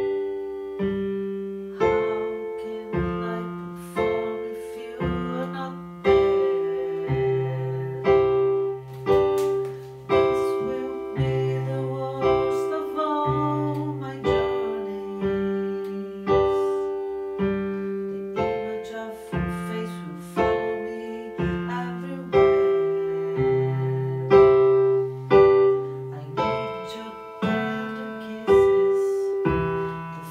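Electronic keyboard playing in a piano voice: slow chords struck about once a second, each fading away before the next, over low bass notes.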